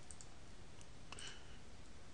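A few faint computer mouse clicks, scattered and irregular, over a low steady room hum: clicks placing a circle in 3D modelling software.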